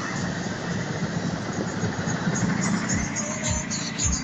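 Road traffic heard from inside a moving car: a steady rumble of engines and tyres as buses pass close alongside, with music playing underneath.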